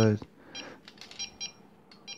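Faint short electronic beeps from a small buzzer: a single beep, then three quick beeps about a fifth of a second apart. This is the altimeter's battery indicator sounding its warning before the supply is brought up to five volts.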